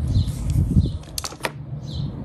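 Handling noise from a small plastic dog-training collar receiver being moved and set down on a table, with two sharp clicks about a quarter second apart.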